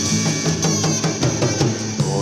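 A Korean pop song playing from a vinyl LP on a turntable: an instrumental stretch with no singing, carried by a drum kit with bass drum and snare under sustained backing instruments.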